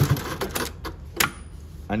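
Juki LU-2860-7 industrial sewing machine finishing a short run of stitches at the very start, then several sharp mechanical clicks about half a second to a second and a half in, the loudest just past a second, over the low steady hum of the machine's motor.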